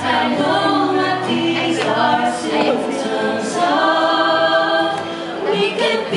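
A man and a woman singing a slow love-song duet into microphones through a PA, in long held notes that glide between pitches.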